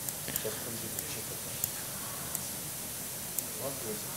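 Steady background hiss with several faint, short clicks scattered through it, like a computer mouse clicking as moves are played on an on-screen chessboard.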